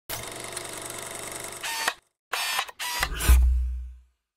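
Intro logo sting made of sound effects: a film-projector whir and clicking, then three short electronic tones, then a deep bass hit, the loudest sound, that fades away near the end.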